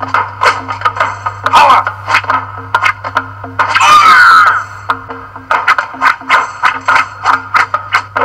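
Martial-arts film fight-scene soundtrack: music under many sharp hits in quick succession, with a boy's loud fighting shout (kiai) about four seconds in. A steady low hum runs underneath.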